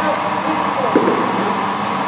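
A man's voice, faint and indistinct, over a steady hum of room noise in a large sports hall.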